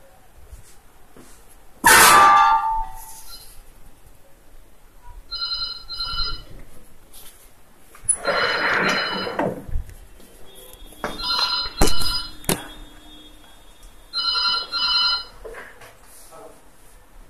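A telephone ringing in a repeating double-ring pattern, a pair of short rings about every three seconds. A loud sudden scrape about two seconds in, with further scraping and sharp clicks between the rings.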